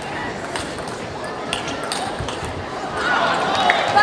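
Table tennis rally: sharp clicks of the celluloid ball off the paddles and the table over a steady arena murmur. Near the end, as the point is won, voices and shouts from the hall swell up.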